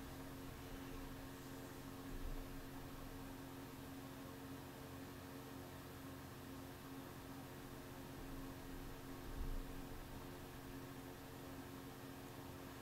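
Quiet room tone: a steady hiss with a faint electrical hum, broken by two faint low bumps, one about two seconds in and one near the end.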